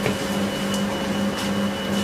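Steady low hum of operating-theatre background ambience, with a thin high whine running through it.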